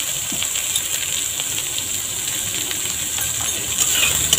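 Eggplant cubes frying in hot mustard oil in a metal kadai: a steady sizzle with scattered light clicks and taps of a metal spatula against the pan.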